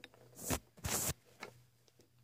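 Two short scuffing rustles, about half a second and a second in, followed by a couple of faint clicks: handling noise as a cat is lifted away from the camera.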